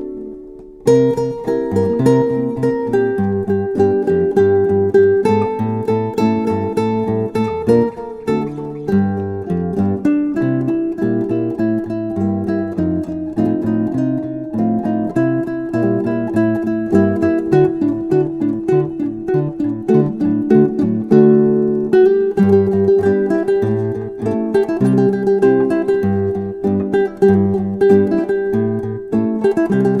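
Instrumental acoustic guitar music: plucked and strummed acoustic guitars playing melody over chords. There is a brief drop just at the start before the playing comes back in about a second in.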